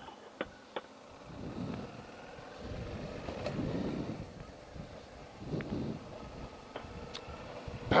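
Suzuki V-Strom 650 ridden along a dirt trail: engine and wind noise heard muffled, swelling and fading about three times, with a few faint sharp ticks.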